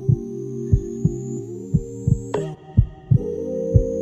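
Logo jingle: a sustained synthesizer chord that shifts pitch a couple of times, with a heartbeat-like thump about once a second and a thin high tone slowly rising over it, which cuts off about halfway through.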